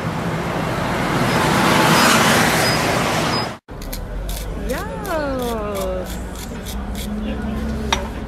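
Loud street traffic with wind rushing on the microphone, cut off abruptly. Then, over café hum, a voice gives one long falling exclamation while a pepper mill is twisted over a dish, giving a run of crisp clicks.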